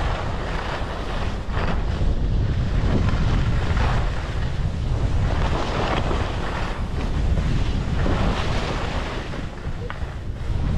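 Wind buffeting the microphone of a camera carried by a downhill skier, with the hiss of skis sliding on snow that swells every second or two as the skier turns.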